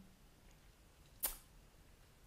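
Near-quiet room tone with one brief sharp click-like noise a little over a second in.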